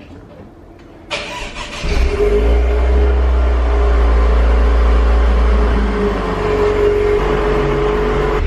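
Cold start of a Cadillac ATS's 2.0 L turbocharged four-cylinder after sitting about two weeks, heard at the tailpipe: the starter cranks about a second in, the engine catches just under two seconds in and settles into a loud, steady idle. The engine is running rich, which the owner puts down to an aftermarket downpipe without a tune and to blow-by.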